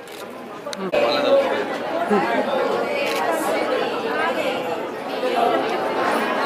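Several people talking at once in overlapping chatter, with a brief sharp click about a second in.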